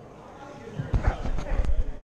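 Handling noise from the recording phone being picked up off the table: a quiet stretch, then from about a second in a quick, irregular run of knocks and bumps close to the microphone.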